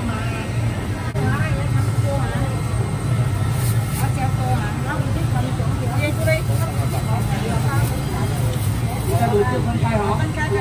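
Indistinct voices talking in the background over a steady low hum, the general din of a busy hawker centre.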